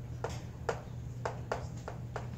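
Chalk writing on a blackboard: a quick, irregular series of about six sharp taps and clicks as the chalk strikes the board, spreading up through the second half.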